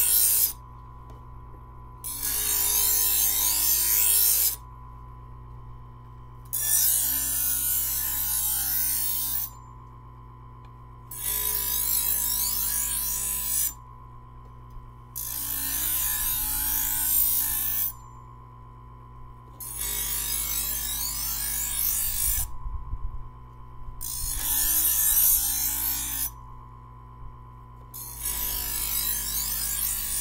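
Presto electric knife sharpener's motor running steadily while a steel knife blade is drawn through its abrasive wheels, giving a gritty grinding rasp on each pull. There are about eight pulls, each two to three seconds long, with only the motor's hum between them, working out small dings in the edge.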